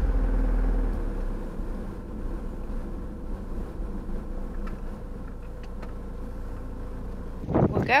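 Camper van engine and road noise heard from inside the cab while driving, a steady low rumble that eases down over the first second or two.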